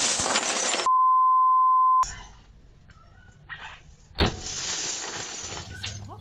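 Home security camera audio of a pickaxe attack on a house's front windows. It opens with a loud rushing noise, then a steady high bleep tone lasting about a second, typical of a broadcast censor bleep. About four seconds in comes a sharp strike of the pickaxe on the window, followed by a noisy rush.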